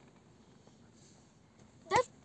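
Quiet car-cabin background, then near the end one brief rising vocal sound from a child.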